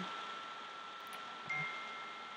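Faint chime-like tones of phone notifications: a thin high tone comes in about one and a half seconds in, over a steady high whine.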